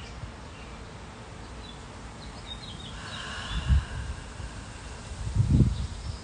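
Quiet backyard garden ambience with a few faint bird chirps about three seconds in, and two low rumbles, like wind buffeting the microphone, at about four and five and a half seconds in.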